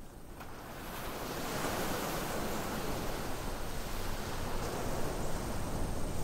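A wash of hiss-like noise that swells over the first two seconds and then holds steady, with no tune or beat: an ambient noise bed opening the song's arrangement.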